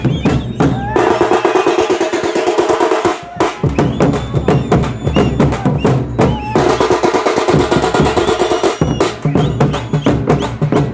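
A troupe of large double-headed drums, beaten with sticks in a fast, loud, dense rhythm. A sustained pitched sound is held over the drumming twice, each time for about two seconds.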